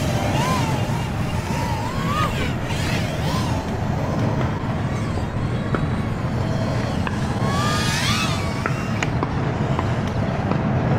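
BETAFPV Air75 tiny whoop's brushless motors and props whining in flight, the pitch rising and falling with throttle, with a sharp rising sweep near the end. Wind rumbles steadily on the microphone underneath.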